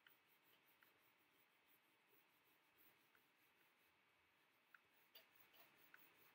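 Very faint scratching of a coloured pencil rubbing on paper, with a few small clicks, the clearest near the end.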